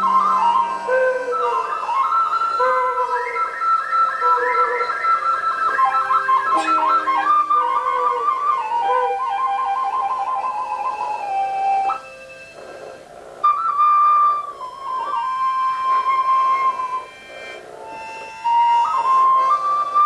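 Small flute-like wind instruments playing a slow, improvised melody in a middle-to-high register. The melody breaks off briefly twice in the second half.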